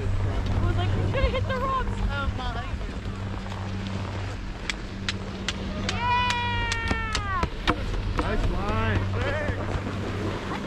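People's voices calling out across the snow, with one long drawn-out yell about six seconds in, over a steady low hum.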